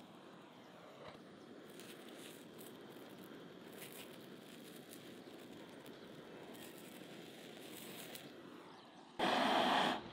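Faint outdoor background with scattered light crackles, then, near the end, a sudden loud burst of hissing gas from a butane torch on a gas canister, lasting under a second.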